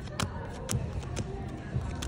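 Playing cards dealt one at a time onto a table, each landing with a short tap, about two a second, over background music and voices.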